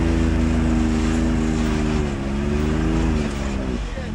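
Can-Am Maverick X3 Turbo RR side-by-side's turbocharged three-cylinder engine running at low, steady revs while crawling over rock. The pitch dips slightly about halfway, wavers, then eases off near the end.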